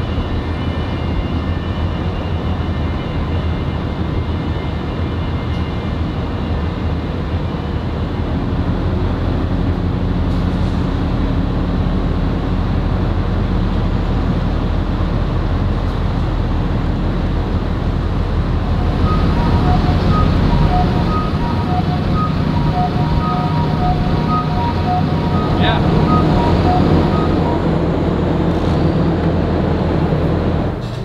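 Container-port machinery ambience: a steady low drone of ships and cargo-handling equipment. About two-thirds of the way in, an electronic warning beeper sounds rapidly and evenly for several seconds, then stops.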